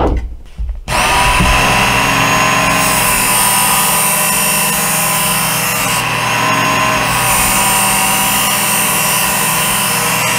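Work Sharp electric belt knife sharpener starting up about a second in and running steadily, its coarse abrasive belt grinding a steel knife edge with a hiss, throwing sparks. The grinding hiss eases briefly about two-thirds of the way through, then returns.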